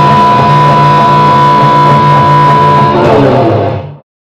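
Electric guitar blues music, with one high note held for about three seconds; the music then fades out quickly and stops just before the end.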